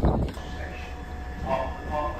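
London Underground Bakerloo line train running, a steady low rumble with a faint steady whine over it, starting about half a second in.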